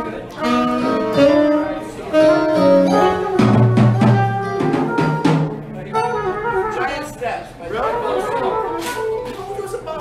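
Live jazz from a small band with upright bass and drum kit: a melodic lead line of changing notes over low bass notes and cymbals.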